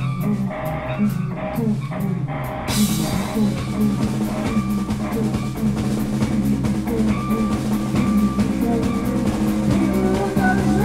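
Rock band playing live: electric guitars and bass over a drum kit. A little under three seconds in, the cymbals come in and the whole band plays on at full volume.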